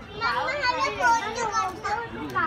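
Children's voices calling out and chattering, several at once and high-pitched.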